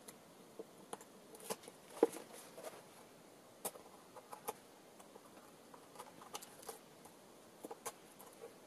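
Small irregular clicks and scratches of a hobby knife cutting the covering film away from the slots in a model aircraft's wing, with a sharper tick about two seconds in.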